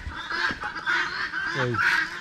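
A flock of guinea fowl and chickens calling over one another, a harsh, continuous chatter of squawks.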